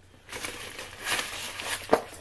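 Crinkling rustle of stuffing paper being handled and pulled out of a structured handbag, with a sharp knock just before the end.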